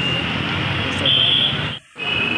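Busy street traffic noise with a background of voices and a steady high-pitched whine that grows louder about a second in; the sound drops out abruptly for a moment near the end.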